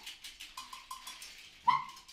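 Sparse free-improvised wind-instrument playing: a run of fast, soft clicks with a few short faint tones, then one sudden, short, loud high note about 1.7 s in.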